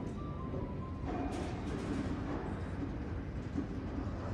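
Steady low hum of indoor room noise with faint background music playing under it.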